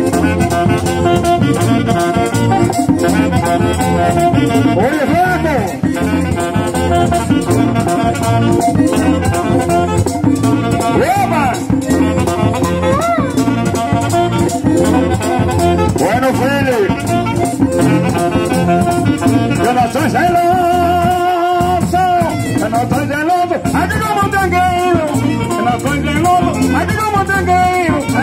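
Live Latin band playing without a break: accordion, a two-headed hand drum and saxophone, with steady percussion.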